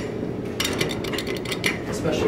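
A quick run of light clicks and clinks lasting about a second, over a steady low background hum.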